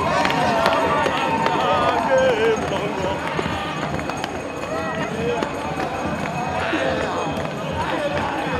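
A dancing crowd shouting, singing and cheering in many overlapping voices, with scattered claps.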